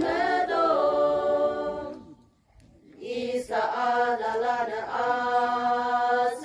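Women's choir singing unaccompanied, holding long sustained notes. The singing breaks off a little after two seconds in for about a second, then the next phrase begins.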